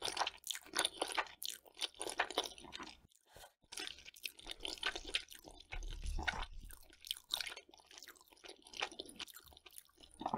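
Close-miked chewing and crunching of spicy sauced mushrooms, wet mouth sounds in rapid bursts, with a short pause about three seconds in and quieter, sparser chewing in the last few seconds.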